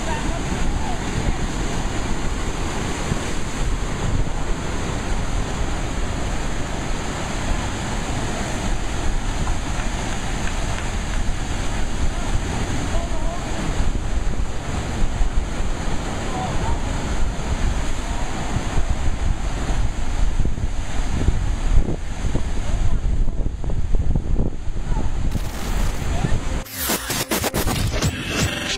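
Ocean surf surging over a rock ledge and pouring into a tidal pool: a continuous heavy rush of churning water with wind buffeting the microphone. The water sound breaks off about a second before the end.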